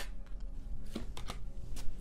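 Tarot cards being handled: a few short, soft card rustles and taps over a faint steady room hum.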